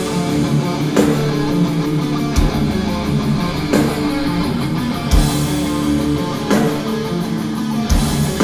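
Thrash metal band playing live: electric guitars and bass over drums, with a heavy drum hit about every second and a half.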